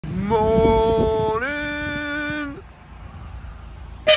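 A cow's long two-part moo, held steady, then stepping up in pitch about halfway through, and ending with a short upturn about two and a half seconds in.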